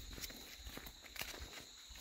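Footsteps on a dirt and gravel road, several people walking, with steps landing about two a second.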